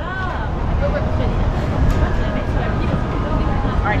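Steady low rumble of outdoor city ambience, with faint voices in the background and a voice near the end.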